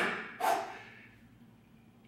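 A single short, forceful exhale about half a second in, a man breathing out hard as he presses dumbbells overhead; then only quiet room tone.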